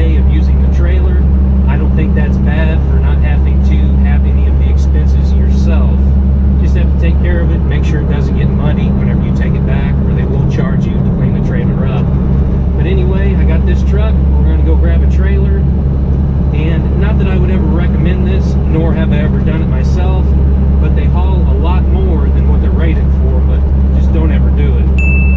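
A man talking over the steady low drone of a Dodge pickup's engine and tyres, heard from inside the moving cab.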